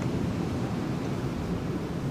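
Steady, even outdoor background noise like a soft wind rush, with no distinct events.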